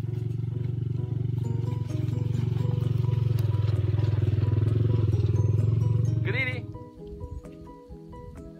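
Motorcycle engine running in a loud, steady low drone with a fast even pulse, which stops abruptly about six and a half seconds in; just before it stops comes a short wavering high-pitched sound. Background music plays underneath.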